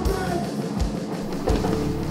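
Live metal band playing a slow, heavy section, with a triggered kick drum struck about every two-thirds of a second under sustained distorted guitars.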